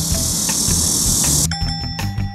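A steady, high-pitched outdoor insect buzz over background music with a low beat; about one and a half seconds in the buzz cuts off and the music goes on with bright chiming notes.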